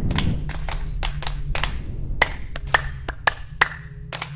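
Outro logo sting: a quick run of sharp clap-like percussive hits at uneven spacing over steady low sustained tones.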